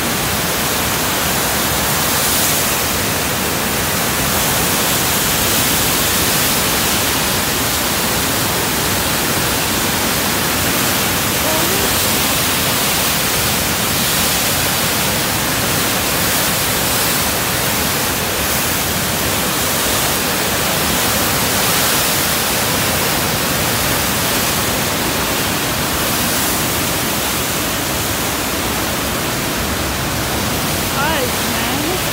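Flood-swollen river rapids rushing and churning in whitewater, a loud, steady wash of water noise with no letup.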